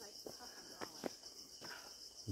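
Faint, steady high-pitched chorus of tropical forest insects with a slight pulse, and a few soft footfalls on a dirt trail.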